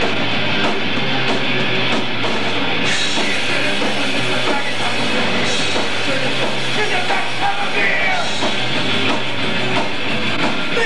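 Punk rock band playing loud live: distorted electric guitar, bass and drum kit.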